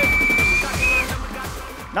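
A high whistle over background music with a pulsing beat of falling low sweeps. The whistle holds one note for under a second, then gives a short second note.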